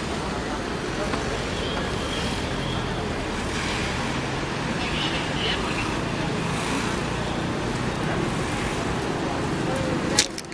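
Steady street ambience: road traffic running along with faint background voices.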